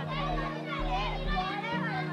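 Many children playing and calling out at once in a school playground, over background music of steady low notes with a regular low pulse.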